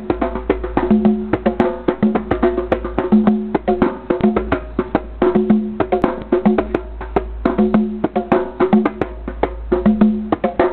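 A djembe and a conga played by hand together in a fast, steady rhythm: a dense stream of sharp slaps with a deeper ringing note coming back every second or so.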